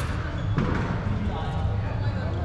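Murmur of people talking in a large indoor sports hall, with a sharp impact right at the start and a thud about half a second in.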